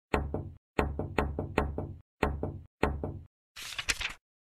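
Hammer-on-nail sound effects: about six sharp strikes roughly half a second apart, each ringing briefly. Near the end comes a short rustling noise.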